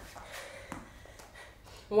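Quiet sounds of a woman exercising with dumbbells on a mat: a few faint, short sounds of breath and movement.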